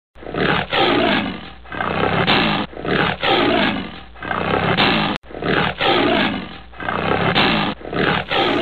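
Lion roaring: a run of rough roars and grunts under a second each, which breaks off suddenly about five seconds in and starts over.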